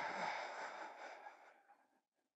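A man blowing a long breath out close to a headset microphone, emptying his lungs as far as he can. The rush of air fades steadily and dies away a little before two seconds in.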